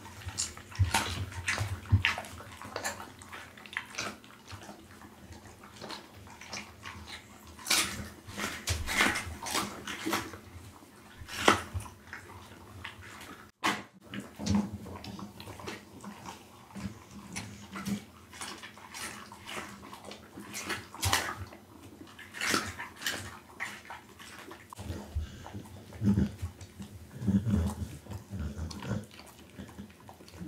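Pit bull eating raw food close to a microphone: irregular wet smacks, licks and crunches of chewing, in uneven bursts.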